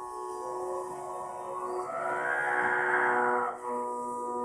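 A bowed long-necked fiddle, played upright, sounds several sustained notes together. About two seconds in the tone swells louder and rougher, then settles back before the end.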